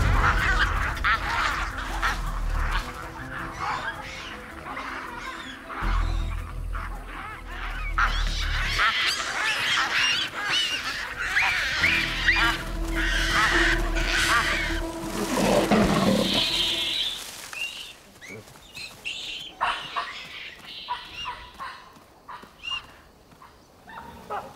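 Baboons screaming in a fight, many calls overlapping, over a film score with low sustained notes. The calls thin out to a few scattered ones for the last several seconds.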